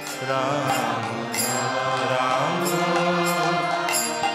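Devotional kirtan: a man's voice singing a chant into a microphone in gliding phrases over the steady held chords of a harmonium, with a barrel drum and high percussion strokes keeping time.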